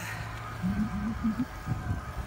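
A man's low, wavering hesitation sound, a quiet drawn-out murmur in a pause between words, over a steady low hum.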